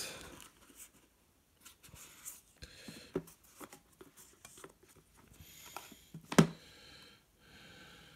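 Handling noise as a small LED video light panel is lifted out of its cardboard box: faint rustles and small clicks, with one sharp knock about six seconds in.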